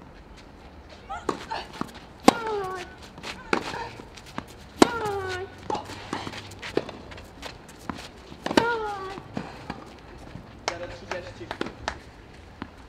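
Tennis rally on clay: sharp racket-on-ball strikes about every second, three of them with a player's grunt that falls in pitch. A short vocal sound near the end.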